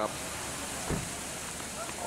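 Steady hiss of water running down a tiered garden cascade, with a brief low thump about a second in.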